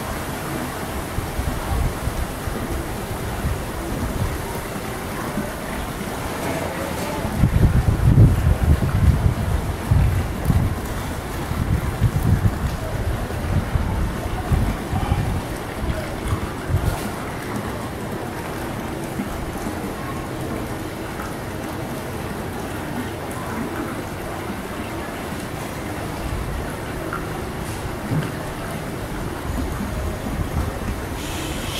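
Wind buffeting the microphone: a steady rushing hiss with irregular low rumbling gusts, heaviest between about 7 and 16 seconds in.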